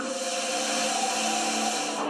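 Dramatic TV soundtrack effect: a steady hissing whoosh over a few held droning notes, which stops at the end as the scene cuts. It is heard through a television's speaker.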